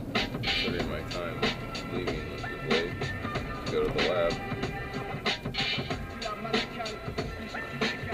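A song with a steady beat and a singing voice playing from the car stereo inside the moving car's cabin, over a low rumble of road noise.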